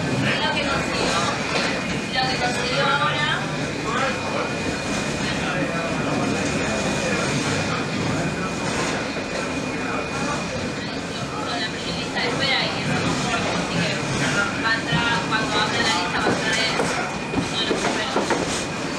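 CRRC Ziyang CDD6A1 diesel-electric locomotive running along metre-gauge track: steady engine and wheel-on-rail running noise with a faint steady high whine, and no let-up.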